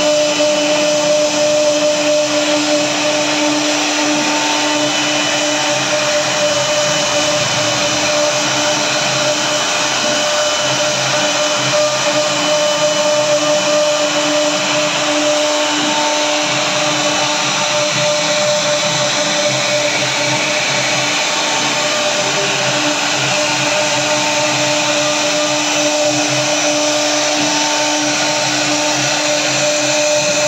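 CNC wood router's spindle motor running steadily: a constant whine over an even rushing hiss.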